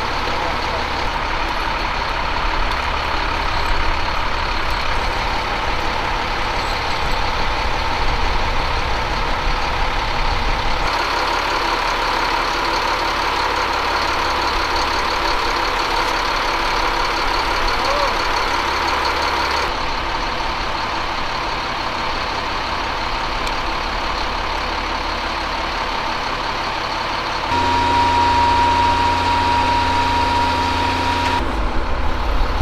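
Diesel engine of an M142 HIMARS launcher truck running steadily, with a low rumble. The background shifts abruptly about 11, 20 and 27 seconds in, and a steady high-pitched tone joins in near the end.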